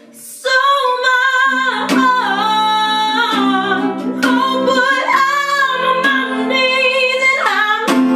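A woman singing a slow, emotive melody with long, wavering held notes, accompanied by a small acoustic guitar being strummed. The voice comes in about half a second in, after the last guitar chord has faded.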